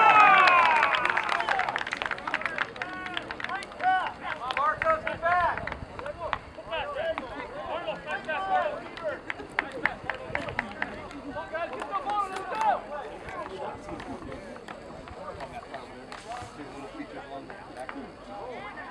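Spectators and players cheering and shouting together as a goal goes in, loudest in the first two seconds, then trailing off into scattered shouts and calls.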